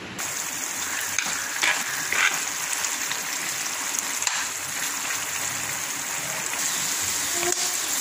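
Chicken pieces in a thick masala gravy sizzling steadily in a frying pan, with a spatula stirring through them.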